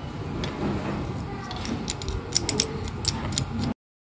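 Plastic data-logger pole clamp being handled and its screw knob turned, giving small clicks and rattles that crowd together in the second half. The sound cuts off abruptly near the end.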